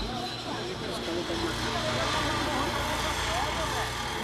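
Urban street ambience: a steady low traffic rumble with faint, indistinct voices in the distance.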